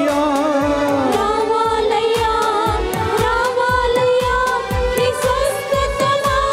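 Devotional worship song: a singing voice carrying a melody over a quick, steady drum beat.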